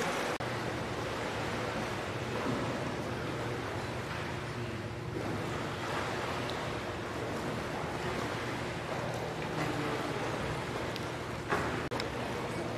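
Pool water splashing and churning as a swimmer does freestyle strokes, over a faint steady low hum.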